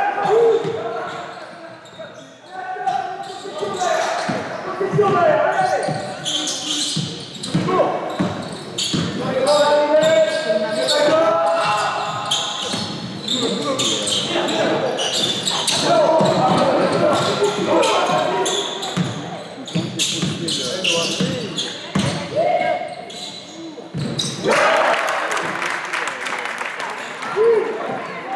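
A basketball bouncing on an indoor court during play, repeated sharp thuds, with people's voices across a large sports hall.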